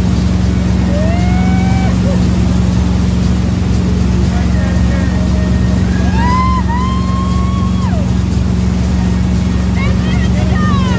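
Boat engine running steadily at speed over the rush of the wake. Long, drawn-out calls from a person's voice ride over it about a second in and again from about six to eight seconds.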